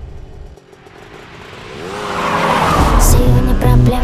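Tyres squealing and a vehicle engine revving in a smoky burnout, swelling from quiet to loud over about three seconds. A music beat comes in near the end.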